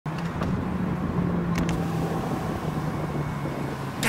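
A car idling, a steady low hum and rumble, with a few faint clicks about half a second and a second and a half in.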